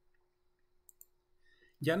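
Two quick computer mouse clicks, close together like a double-click, about a second into an otherwise near-silent stretch, expanding a tree node on screen.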